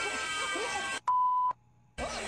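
Censor bleep: a single steady beep at one pitch, about half a second long, coming a second in with the programme sound cut off around it. Before it, voices from a children's TV show play.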